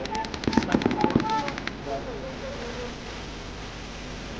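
Paintball marker firing a rapid string of shots, about ten a second, that stops after under two seconds.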